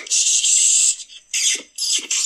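A funny ringtone playing through a smartphone's small speaker: a high, hissing noise for about a second, then a run of short bursts about every 0.4 seconds.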